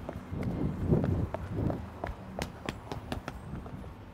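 Footsteps of a person running on paving, quick regular steps about three a second.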